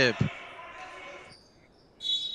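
A single sharp thud of a futsal ball just after the start, echoing through the sports hall.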